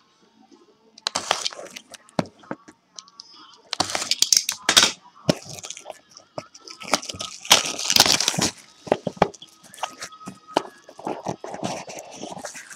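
Plastic wrapping crinkling and crackling by hand in several bursts, as a sealed trading-card box or pack is opened.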